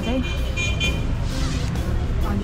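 A vehicle horn sounds for about a second from street traffic, over a steady low traffic rumble, with music playing in the background.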